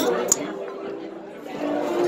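Background chatter of a busy dining room, with two sharp clicks in the first third of a second.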